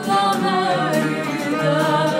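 A woman singing live to a violin, her voice and the bowed violin holding long notes that waver slightly.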